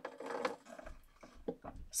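Plastic alcohol markers being handled and set down: a sharp click at the start, a short rustling clatter, then a few light knocks and rubbing.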